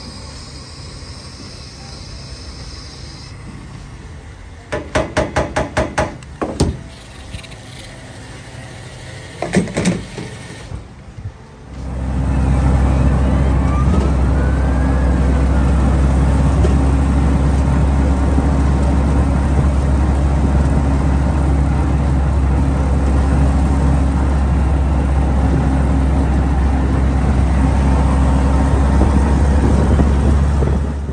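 A few clusters of sharp clicks and knocks. Then, from about twelve seconds in, a WWII jeep's four-cylinder side-valve engine runs steadily and loudly under way, heard from inside the open, canvas-topped cab.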